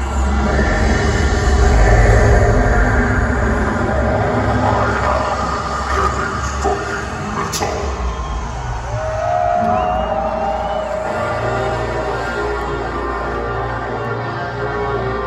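Dark, ominous recorded intro music played loud through an arena PA, with a heavy low rumble under it and crowd noise around it. A single long call from the crowd sounds over it about nine seconds in.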